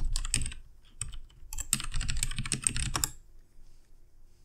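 Typing on a computer keyboard: a few keystrokes at the start, then a quick run of keystrokes from about one and a half to three seconds in, then a pause. This is a web address being typed into the browser.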